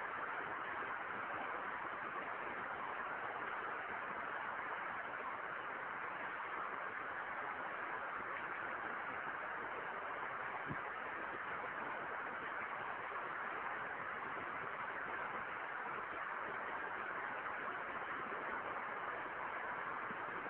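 Steady hiss of a recording's background noise, with no speech. A faint tick comes about halfway through.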